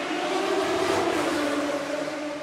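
Race car engine sound effect: a steady drone with a slight downward slide in pitch.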